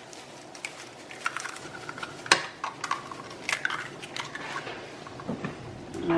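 Two eggs being cracked into a cast iron skillet of squash, then a wooden spoon knocking against the pan: a scatter of sharp taps and clicks, the loudest about two seconds in.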